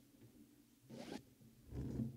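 Faint rustle of clothing and handling noise close to a pulpit microphone as a man moves: a short swish about a second in, then a low thump near the end as he steps away from the pulpit.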